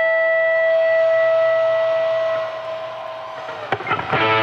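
Electric guitar holding one long sustained melody note, which fades and thins out about two and a half seconds in. A couple of sharp picked attacks come near the end as the next phrase begins.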